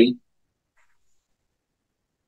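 A man's spoken word ends just after the start, and then there is dead silence.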